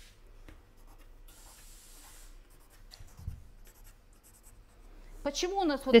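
Pencil drawing on pattern paper: one longer scratching stroke about a second in, then a run of short, quick strokes a little later.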